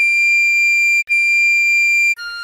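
Recorder playing two long, steady high D notes, each about a second long, with a brief break between them.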